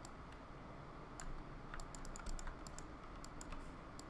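Faint, irregular clicking of a computer mouse and keyboard: about a dozen clicks, some in quick pairs, spread over a quiet background hiss.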